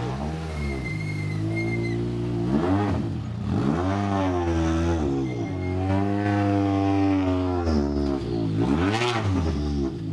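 Peugeot 208 T16 R5 rally car's turbocharged four-cylinder engine pulling away at low speed, its revs rising and falling several times with sharp dips about three seconds in and near the end. The car is stuck in first gear because its gear-shift cable has snapped.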